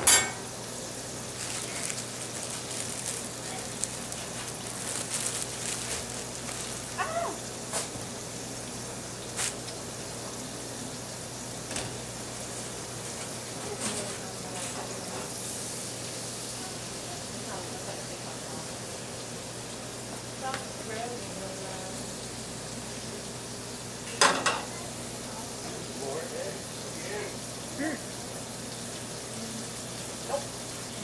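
Steady sizzling of beef patties and egg-soaked bread frying in several stainless steel pans on a gas range, with scattered sharp clanks of pans and utensils being handled, the loudest just after the start and about three-quarters of the way through.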